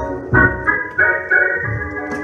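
Electric organ played in full sustained chords over short pulsing bass notes, the chords changing several times.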